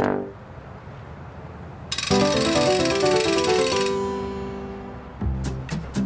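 A cartoon musical sound effect: a sudden bright shimmer with a quick run of chiming notes, leaving a few notes ringing out and fading. A low thump follows near the end.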